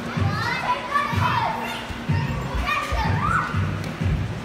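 Children's high, excited voices calling and squealing across a large indoor trampoline hall, over background music with a steady beat about twice a second.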